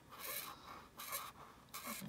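The hard bold tip of a dual-tipped felt marker rubbing across a paper note card as it draws a wavy line, in three short strokes.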